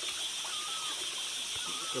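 Forest stream ambience: a steady wash of running water under a constant high-pitched drone, with a few faint short whistled notes.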